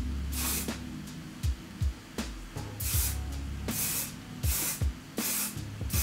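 Aerosol hairspray can sprayed in five short hissing bursts, one near the start and four closer together in the second half.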